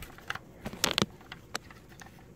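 Handling noise: a few light clicks and knocks of a plastic smoke detector head being picked up and turned in the hand, the loudest a little under a second in.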